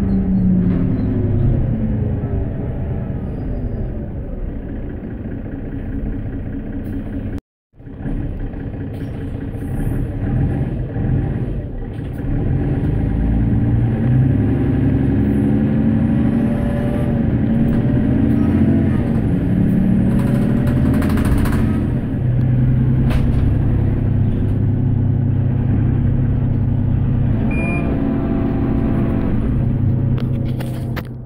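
Mercedes-Benz Citaro bus heard from inside while under way: its OM457LA six-cylinder diesel engine runs with road noise, the engine note rising and falling as the bus speeds up and slows. The sound cuts out for a moment about seven and a half seconds in.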